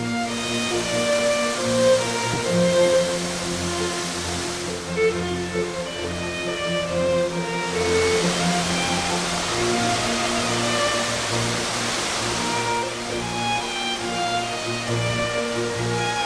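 Gentle instrumental music with a slow melody of held notes. A rushing hiss, like falling water, swells in twice over it.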